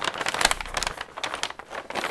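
A brown paper bag being folded and handled, its stiff paper crinkling and rustling in a dense run of small crackles.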